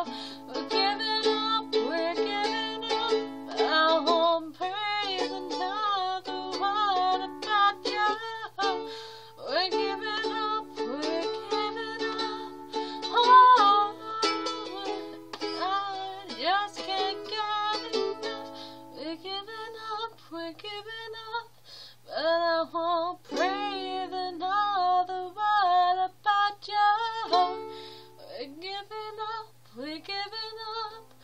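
Ukulele strummed in chords, with a woman singing along over it.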